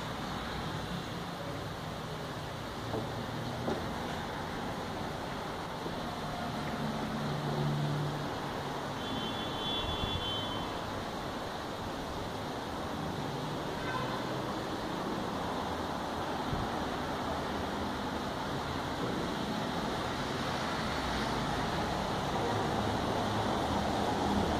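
Steady rushing background noise with no distinct events, rising slightly toward the end; a brief faint high-pitched tone sounds about ten seconds in.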